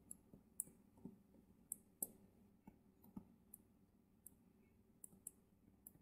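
Faint, irregular clicks and taps of a stylus on a tablet screen during handwriting, about a dozen over a few seconds.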